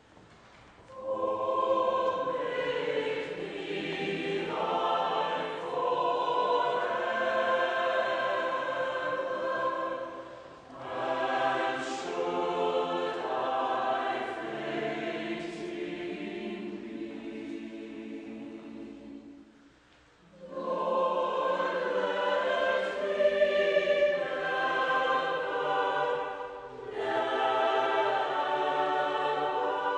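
A choir singing in long sustained phrases of about ten seconds each, with short pauses between them.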